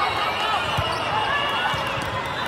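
Volleyball rally on an indoor sport court: ball contacts and players' footfalls, with a low thud just under a second in, over a steady hubbub of voices echoing in a large hall.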